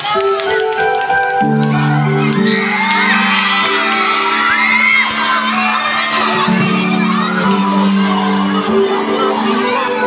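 Music with sustained low chords, joined from about two seconds in by an audience cheering and whooping, with children shouting.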